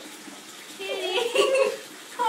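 Water running into a bathtub, with a drawn-out voice-like call lasting about a second, starting just under a second in.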